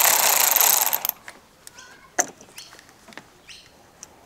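Cordless electric ratchet running for about a second, spinning off the nut on a car battery terminal clamp to disconnect the battery. It is followed by a few faint clicks and knocks.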